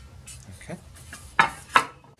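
A ribbed sheet-metal plate being set down on a wooden workbench: two sharp metallic clanks in quick succession, about a third of a second apart, with a brief ring.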